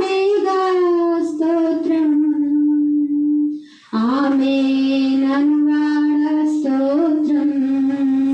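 A woman singing a slow worship song into a handheld microphone, unaccompanied, in long held notes. The singing breaks off briefly about three and a half seconds in, then carries on.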